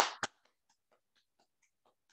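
The tail of a spoken word, then a few faint, irregular hand claps heard over a video call.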